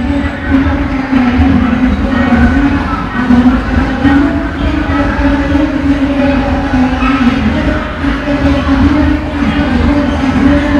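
Coin-operated kiddie ride running: a steady low motor rumble under a loud, simple electronic tune from its speaker.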